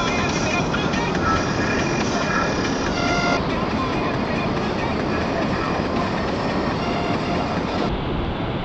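Ocean surf breaking on a beach, a steady, loud rush of noise with no distinct events.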